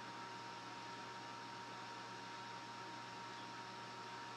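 Faint steady hiss with a low hum under it and a thin, steady high tone; nothing else happens.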